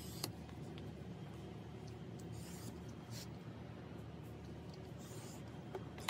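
An X-Acto knife blade drawn lightly along a steel ruler across heavy cardstock: a few faint, short scratching strokes a second or two apart. These are light scoring passes that crease the fold lines without cutting through the card.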